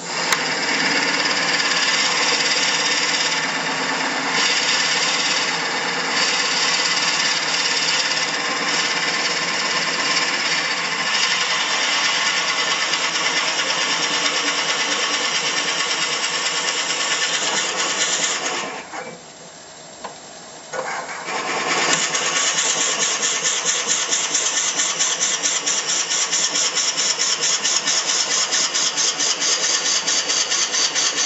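A 1-3/8 inch Forstner bit boring into a spinning cherry blank on a wood lathe: a steady, grinding cut. About two-thirds of the way through, the cutting stops for about three seconds, leaving a quieter running sound. It then resumes with a fast, even pulsing.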